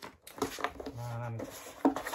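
Cardboard box and paper inserts being handled: light rustling and clicks, with one sharp tap near the end. A brief hummed "mm" from a man about a second in.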